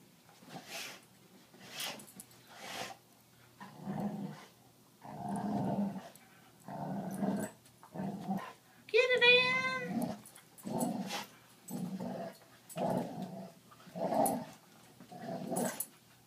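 Dogs growling in play during a tug-of-war, in short growls about once a second, with one longer, wavering, higher-pitched cry about nine seconds in.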